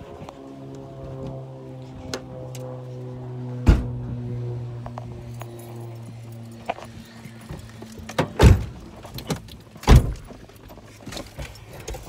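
A steady low droning tone with overtones hangs through the first seven or eight seconds and fades out. One knock comes about four seconds in, and near the end a car door bangs twice, the last two the loudest sounds.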